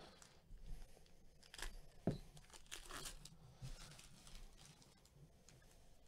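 A trading-card pack wrapper being torn open and crinkled by gloved hands: a few short, faint rips and rustles in the first three and a half seconds, with a sharp click about two seconds in.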